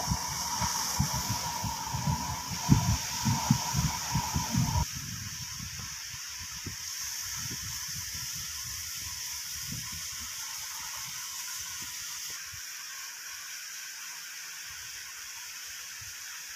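Steady hiss of water jets spraying from hoses, heard at a distance. Irregular low buffeting in the first five seconds, then only the even hiss.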